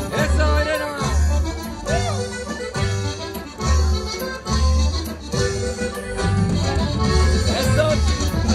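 Live dance music played by an accordion carrying the melody over a guitar and a steady bass beat.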